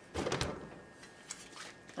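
An old refrigerator door being shut: a short rattling clunk in the first half-second, then a couple of faint clicks.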